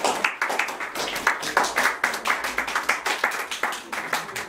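A small audience clapping: many overlapping hand claps in a quick, uneven patter.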